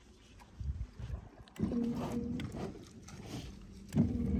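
Low knocks and rumbling, then, about a second and a half in, a Minn Kota electric trolling motor starts a steady humming whine that fades after about a second. The motor keeps coming up out of the water on its own, which the owner cannot explain.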